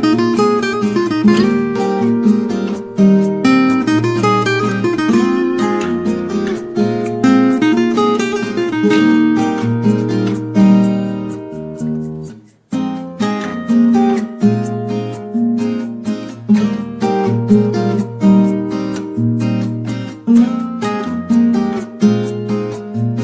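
Background music on acoustic guitar, plucked and strummed notes. It fades to a brief gap about halfway through, then starts again.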